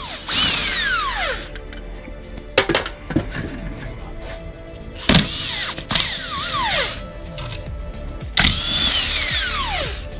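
Power drill with a socket spinning seat-frame bolts in three short bursts. Each burst ends in a falling whine as the motor winds down. A few sharp clicks come between the first two bursts.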